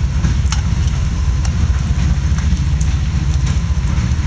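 Heavy rain falling, with scattered sharp drip clicks, over the steady low rumble of a passing train.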